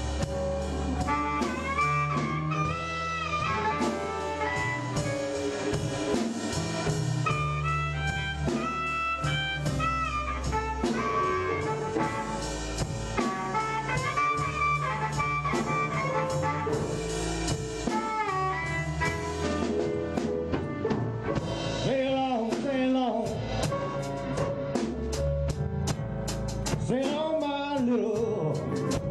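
Electric blues band playing an instrumental passage: a harmonica played into a microphone carries the lead with bent, wailing notes over electric bass, drum kit, guitar and keyboard. The cymbal strokes grow busier near the end.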